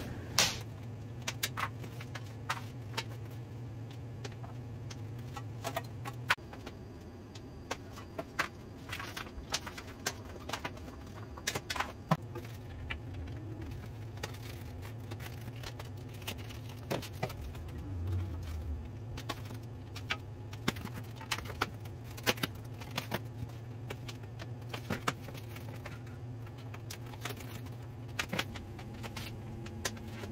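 Packaging being stripped off a boxed e-bike by hand: irregular sharp clicks and snaps of zip ties being cut and plastic and foam wrap being pulled away, over a steady low hum.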